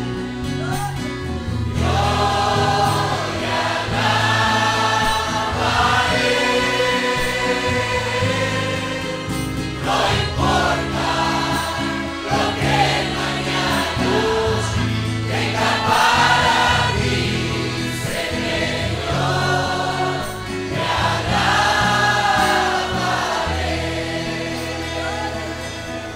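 A church congregation singing a worship song together over instrumental backing, with a steady bass line under sung phrases of about two seconds each.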